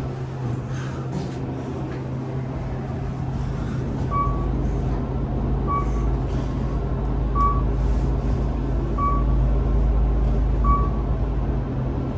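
Kone-modernized traction elevator car travelling down, heard from inside the car: a steady hum, with a low rumble that builds about a third of the way in and fades just before the end as the car slows. A short beep sounds five times, about every second and a half, as the car passes each floor.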